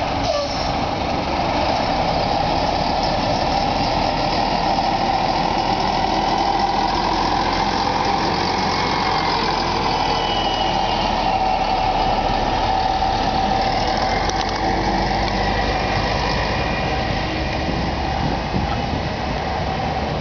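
Diesel engine of an Ikarus city bus running steadily as the bus pulls away and drives past, the sound easing off a little near the end as it moves away.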